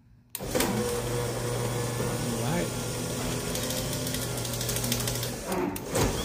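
Chamberlain HD220 garage door opener's motor starting suddenly about a third of a second in and running with a steady hum as the door moves. It dips briefly and changes just before the end.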